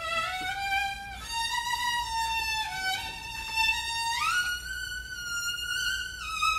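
Solo violin bowed live, playing a slow melody of a few long held notes. The notes are linked by short slides, with a clear upward slide to a higher held note about four seconds in.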